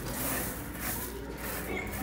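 Hands scraping and scooping sand in a sandbox, a soft gritty hiss.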